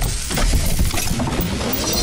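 Sound-designed logo sting: a dense clatter of clinking, breaking pieces and drum-like hits over a deep, sustained bass rumble.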